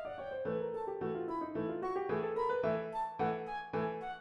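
Flute and piano duet: a flute melody slides down and back up over piano chords, which turn into evenly repeated strikes about three times a second from halfway through.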